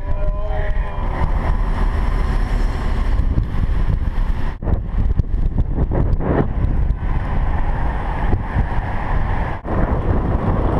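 Wind buffeting the microphone of a camera mounted on a moving bicycle, with road noise from the ride: a steady, loud low rumble.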